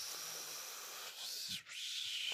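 A man's breathy hiss through the teeth while he searches for a forgotten word, in two stretches with a short break about three-quarters of the way through.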